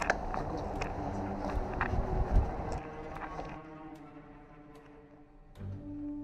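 Scuffing, clicks and a heavy thump about two seconds in, from someone moving quickly with an action camera on them. The noise fades away after about three and a half seconds, and background music with long held notes comes in near the end.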